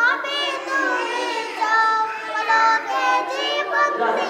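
A few young girls singing a Bangla gojol (Islamic devotional song) together in unison, without instruments, drawing out long held notes.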